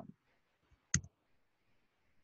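A single sharp click about a second in, followed at once by a fainter tick: a computer mouse click advancing a presentation slide.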